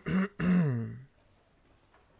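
A man clearing his throat: a short rasp, then a voiced 'uhh' that falls in pitch, all over within about a second.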